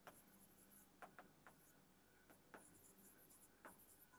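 Faint tapping and scratching of a stylus writing on an interactive display screen, a handful of light taps spread through an otherwise near-silent room.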